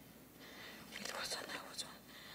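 Faint breathy, whisper-like sounds from a person close to the microphones. Quiet at first, then a short cluster of soft hissy strokes from about a second in, with no voiced pitch.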